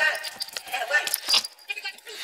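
Light metallic clinks and plastic rustling as small watchmaker's tools and a clear plastic dust cover are handled, with a few sharp clicks about a second in, over a voice in the background.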